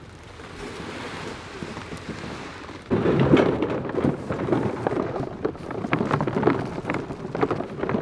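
Wind rumbling on the microphone with rustling camo clothing and irregular knocks from bundles of plastic goose decoys as they are carried. A soft hiss builds over the first three seconds, then the sound turns suddenly louder and rougher.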